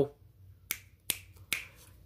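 Three short, sharp clicks, each a little under half a second apart, in a quiet pause.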